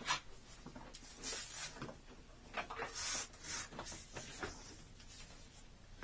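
Handling noise as a shop vac's plastic hose and wand are picked up and moved: scattered rubbing and rustling with a few light plastic clicks. The vacuum motor is not running.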